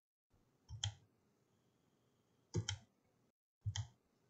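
Computer mouse clicking a few times: once about a second in, a quick double click past halfway, and once more near the end.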